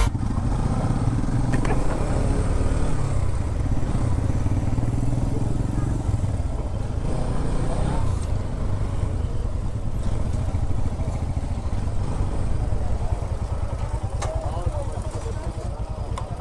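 Motorcycle engine running at low speed as the bike rolls slowly, with wind noise on the microphone, easing a little near the end as the bike comes to a stop.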